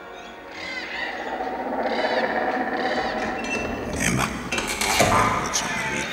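Soundtrack sound effects: three high, curling chirp-like sounds about a second apart over a swelling, growing rumble, then sharp hits about four and five seconds in.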